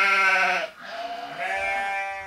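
Goat bleating twice: the first bleat falls in pitch as it ends, under a second in, and a second, longer bleat starts about a second in.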